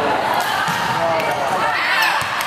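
Several voices of volleyball players and spectators calling out at once in a large gym hall, with a few short, sharp knocks of the ball being struck or landing.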